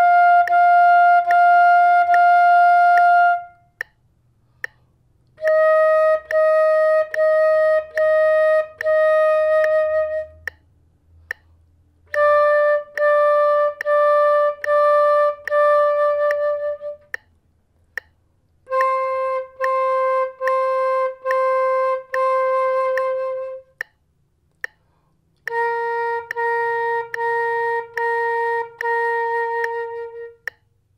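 Concert flute playing a tonguing warm-up: each run is one note repeated in short detached strokes, the tongue separating the notes on a steady stream of air with a "da" articulation. Five such runs, each a step lower in pitch than the last, with short breaks between them.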